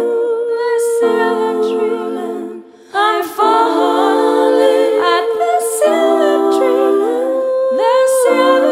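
Music: a song's wordless, layered vocals humming over held chords. The sound thins and nearly stops briefly just before the halfway point, then the voices come back in.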